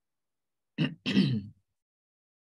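A person clearing their throat: two quick sounds in a row, a little under a second in, the second one longer.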